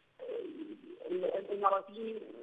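Sound coming over a telephone line, thin and cut off at the top, beginning just after a short silence: low pitched sounds that slide down and curve up and down.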